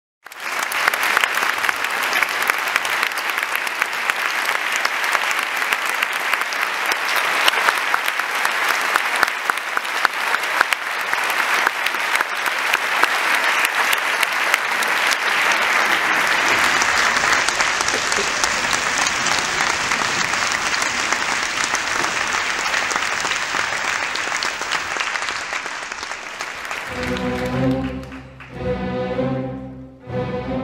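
Large audience in a concert hall applauding, a dense steady clapping that lasts almost the whole time. Near the end the clapping gives way to a symphony orchestra starting to play, strings to the fore.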